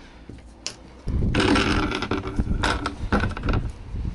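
Wooden shed door being pushed open. It scrapes and rattles for about two and a half seconds, starting about a second in, with a few knocks at the end.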